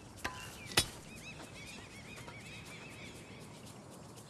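Two sharp knocks about half a second apart, then faint chirping of small birds over quiet outdoor ambience.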